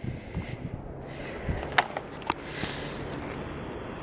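Footsteps on wet sand, with a few soft clicks over a low, steady outdoor rumble.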